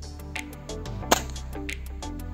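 A CBC Expresso 345 break-barrel air rifle with a 40 kg gas-ram kit fires a single shot about a second in, a sharp report over background music.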